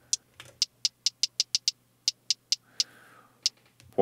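Short, bright hi-hat hits played from an Akai MPC One's pads, about a dozen in an irregular run that comes fastest in the middle. The hi-hat sample is being auditioned as it is warped and retuned three semitones down.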